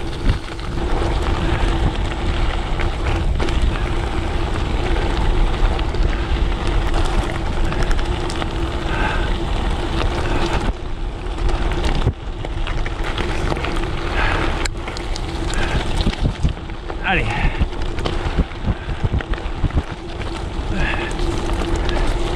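Gravel bike's 42 mm Teravail tyres rolling over a loose gravel track: a continuous crunching rumble mixed with wind noise on the microphone, with a steady hum underneath. A few brief vocal sounds from the rider break in during the second half.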